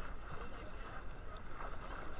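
Seawater lapping and sloshing around a camera held at the water's surface, with wind on the microphone.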